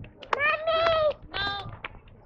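A toddler's high-pitched vocalising: one long drawn-out call just under a second long, then a shorter one, with a few sharp clicks between.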